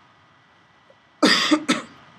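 A person coughing twice in quick succession, loud and harsh, a little over a second in.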